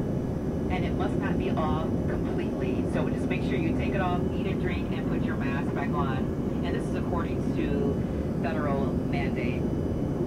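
Steady cabin drone of an Embraer ERJ-135 climbing, its rear-mounted Rolls-Royce AE 3007 turbofans running at climb power close behind the seat, with a voice talking over it.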